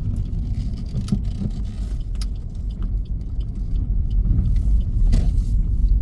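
A car driving along a road, heard from inside the cabin: a steady low rumble of road and engine noise that grows a little louder in the second half, with a few small clicks.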